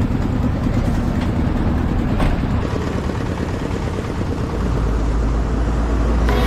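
A heavy truck's engine running at close range, a continuous low rumble with road noise. The rumble settles into a steadier low drone in the last second or so.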